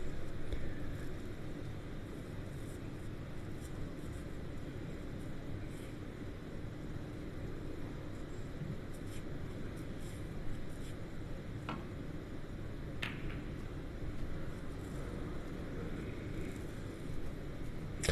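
Low steady background hum with two faint, sharp clicks about a second and a half apart, near the middle: snooker balls being struck, the cue tip hitting the cue ball and then the cue ball hitting a red.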